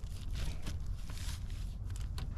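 Plastic Ziploc bag being pressed shut along its zip seal: scattered small clicks and crinkles of the plastic.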